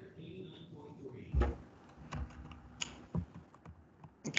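Scattered clicks and knocks, like a keyboard and desk being handled, the loudest a thump about a second and a half in, with a faint voice in the background at the start.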